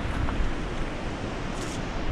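A river rushing steadily, with wind buffeting the microphone.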